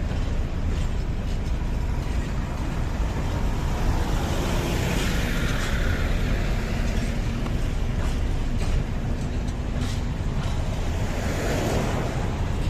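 Freight train of open wagons rolling past close by: a steady low rumble of wheels on the rails with scattered clicks and knocks. A road vehicle passes on the adjacent road about five seconds in, and another approaches near the end.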